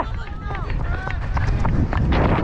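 A cricket batsman's running footsteps on a concrete pitch, heard from a helmet-mounted camera as a run of short thuds over a steady low rumble of wind and movement on the microphone.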